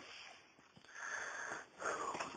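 A man's faint breath drawn in between spoken sentences, a soft hiss lasting about a second.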